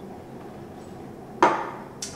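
A single sharp knock about one and a half seconds in, with a short ringing tail: a drinking cup set down on the wooden bar counter. Before it, only faint room tone.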